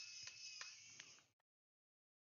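Near silence: three faint clicks in the first second, then the sound cuts out to dead silence.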